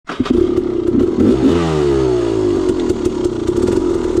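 Two-stroke dirt bike engine idling at a standstill. It is revved about one and a half seconds in, and the revs fall back to idle over about a second.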